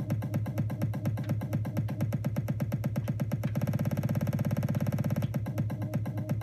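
Electronic dance track played through DJ software, chopped into rapid, evenly spaced repeats by a beat masher effect. The repeats speed up about three and a half seconds in and ease back just after five seconds.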